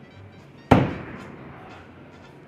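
A throwing axe hitting and sticking into a wooden plank target: one sharp, loud thunk a little under a second in, with a short ringing tail.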